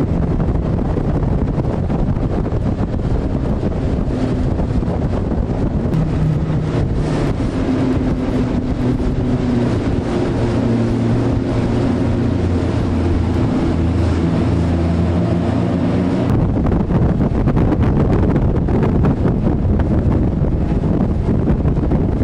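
Strong wind buffeting the microphone over the rush of water, with a motorboat engine running underneath whose pitch shifts up and down. About three-quarters of the way through, the engine drops out suddenly and the wind and water noise carry on alone.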